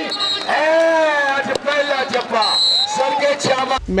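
A man's voice calling match commentary in long, drawn-out phrases that rise and fall. A short, high, steady tone sounds about two and a half seconds in.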